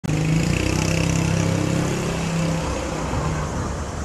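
A motor vehicle's engine running close by with a steady hum that fades in the second half.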